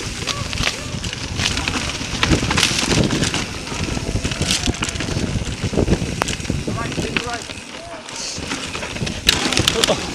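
Mountain bike ridden fast down a dirt singletrack: knobby tyres rolling and crackling over dirt and dry leaves, with frequent sharp rattles and knocks from the bike as it hits bumps, and wind on the microphone. It eases off briefly about eight seconds in.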